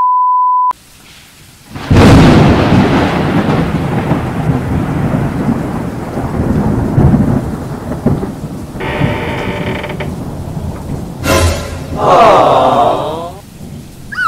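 A short steady beep, then a sudden loud thunderclap about two seconds in, followed by rumbling thunder over steady rain. A second crack of thunder comes near the end.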